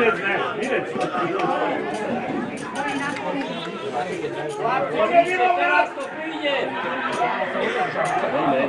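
Several people talking over one another: indistinct chatter of voices with no clear words.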